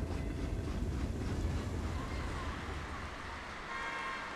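Passenger train running along the tracks: a steady low rumble with rolling noise.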